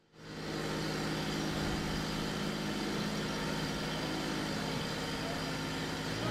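A motor running at a steady speed: a constant low hum with a fixed pitch, fading in at the start.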